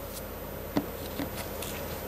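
Steady outdoor background noise with a faint, even hum and a few soft clicks, about a second in and again shortly after.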